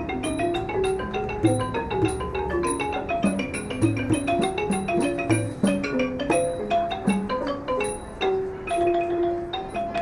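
Thai traditional ensemble music led by a ranad, the Thai wooden xylophone, playing quick running lines of mallet notes over a regular high metallic tick that keeps time about twice a second.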